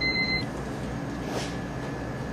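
A single electronic beep, one steady tone about half a second long, at the very start, over a steady low equipment hum. It is typical of an ultrasound pachymeter signalling that it has taken a corneal thickness reading.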